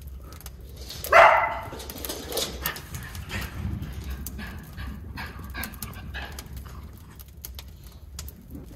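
A miniature schnauzer barks once, loudly, about a second in. Then comes a run of quick, irregular clicks of the dogs' claws on the wooden stairs as they run up.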